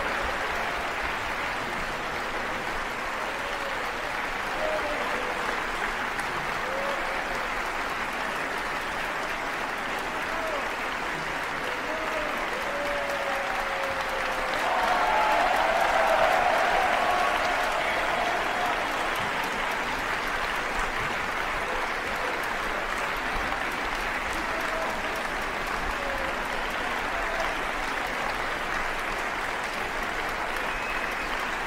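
Large audience applauding in a concert hall, a long steady ovation that swells louder about halfway through.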